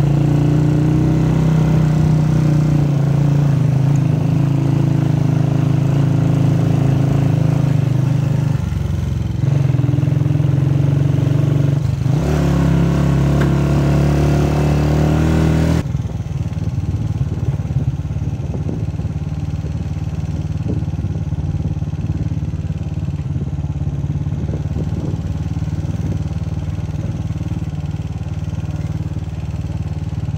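Motorcycle engine running steadily while riding a dirt track, its note dipping briefly twice, about 9 and 12 seconds in. A little past halfway the steady engine note falls away to a quieter, rougher running noise.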